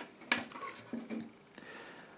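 Faint, scattered clicks and light rustling of hands handling a small plastic action camera and its open clear plastic waterproof housing.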